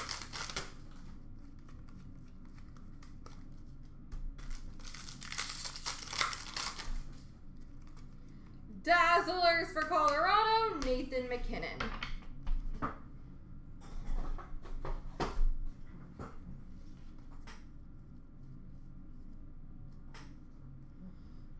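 Hockey card pack wrapper crinkling as it is torn open, with a few seconds of busy crackling. Later there is a short stretch of voice and a scatter of light clicks as the cards are handled.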